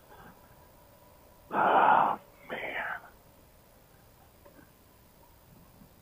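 A man's voice: two short, unintelligible utterances about a second and a half in, the second quieter, over an otherwise quiet background.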